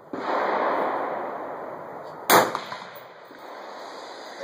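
A single AR-15 rifle shot about two and a half seconds in: one sharp crack with a short trailing echo. Before it, a rushing noise that slowly fades.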